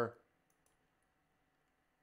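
A man's voice trails off, then near silence with a few faint, short clicks.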